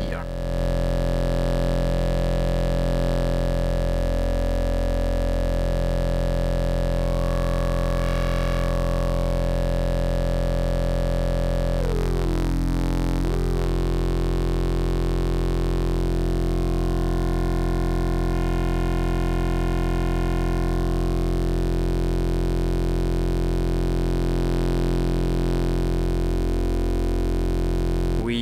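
Low, buzzy synthesizer drone from Rossum Trident oscillators wave-spliced through a Klavis Mixwitch. Its timbre shifts as the auxiliary oscillators' symmetry is adjusted, with a brief sweep down and back up in the tone about halfway through.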